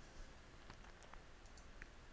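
Near silence with a few faint, scattered clicks from computer keys and a mouse.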